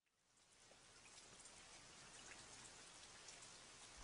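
Near silence: a faint, even hiss with scattered tiny crackles fades in about half a second in and slowly grows.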